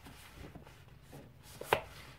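Paperback books being handled on a bookshelf: a faint rustle as one book is slid back into the row and another pulled out, with one sharp knock about three-quarters of the way through as a book strikes the shelf or its neighbours.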